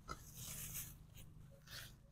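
Faint rustling of ginger leaves and stalks as gloved hands reach in to pull up the plants, with a small click near the start.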